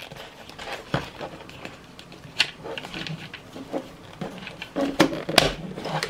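Plastic clicks, taps and knocks from handling a plastic helmet and fitting a plastic microphone clip to its side rail, scattered irregularly, with a few sharper knocks about a second in and near the end.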